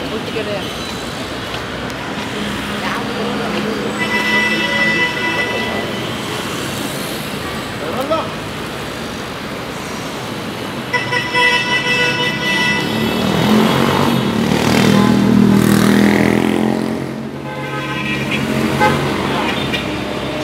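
Busy city street traffic: car horns sounding in long blasts about four seconds in and again about eleven seconds in, over a steady din of vehicles, with an engine passing close and loudest around fifteen seconds in.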